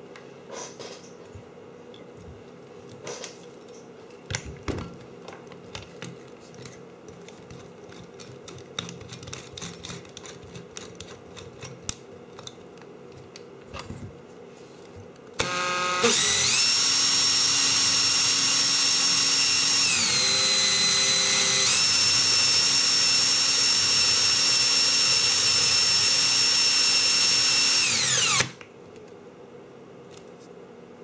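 Cordless drill starting up and running at speed for about twelve seconds with a steady high whine. The whine dips lower for a couple of seconds midway, then winds down and stops. The drill turns the shaft of a small brushless DC motor so that the output of its freshly soldered wires can be checked on an oscilloscope. Before the drill starts, light clicks and handling sounds.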